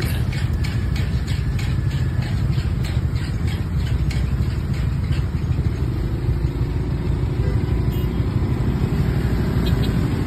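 Motor scooters and cars idling in stopped traffic, a steady low engine-and-road rumble with no let-up. A run of light ticks, about three a second, sounds during the first few seconds.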